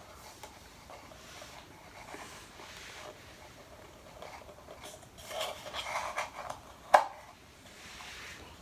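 Paper cup and string being handled as a knot is tied: faint rustling and scraping, busier between about five and six and a half seconds in, with one sharp tap about seven seconds in.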